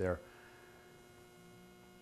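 A man's voice ends a word at the very start, then a pause of near-silent room tone carrying a faint, steady electrical hum.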